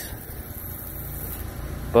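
Soft-wash spray wand hissing faintly as it sprays cleaning solution onto a flat tile roof, stopping about a second and a half in, over a steady low rumble.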